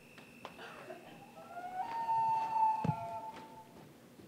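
A long wailing tone, rising and then held steady for about two seconds, with a single sharp knock near its end and a faint high whine in the first second.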